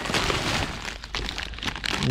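Bubble wrap and a thin plastic bag crinkling and crackling in the hand while a new brake caliper is unwrapped: a dense, irregular run of small cracks.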